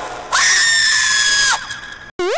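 Crowd noise, then one loud, high-pitched scream held steady for about a second and cut off sharply.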